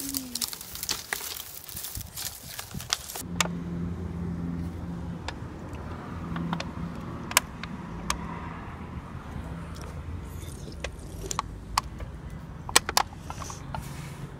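Dry brush and twigs crackling and snapping as someone pushes through them for about three seconds. Then a steady low hum of a vehicle engine nearby, with occasional sharp clicks from an aluminium drink can being handled.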